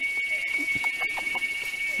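A steady high-pitched tone that holds one pitch without a break, with a few faint short clicks in the first second.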